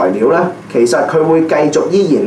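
A man speaking, with a short pause about half a second in.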